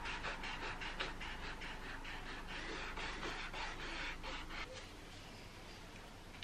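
Eraser rubbing back and forth over pencil lines on a canvas, in quick scratchy strokes about four a second, stopping about five seconds in.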